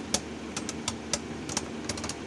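Two Beyblade Burst spinning tops whirring as they spin down in a plastic stadium, with a run of irregular light clicks as they knock against each other and the stadium floor.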